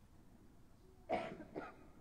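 A person coughing about a second in, one sharp cough followed by a smaller second one, against an otherwise quiet room.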